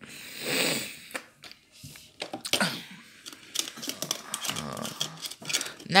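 Plastic mobile phones and cables being handled and picked out of a cluttered shelf: scattered light clicks and knocks of handsets. A soft rushing noise fills the first second.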